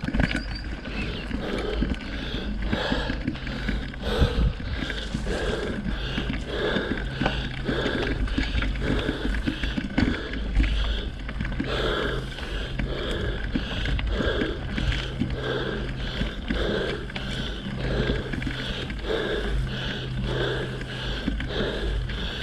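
Mountain bike ride noise on a narrow dirt trail: steady low rumble of tyres and wind on a handlebar-mounted camera, with the rider's heavy breathing in a regular rhythm.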